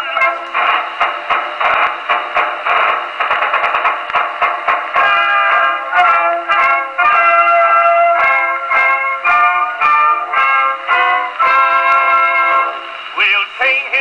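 Instrumental break of an old acoustic disc record, played through a 1911 Columbia Grafonola Nonpareil wind-up gramophone. Its tone is thin and boxy, with no deep bass. Quick short notes for the first few seconds give way to longer held notes.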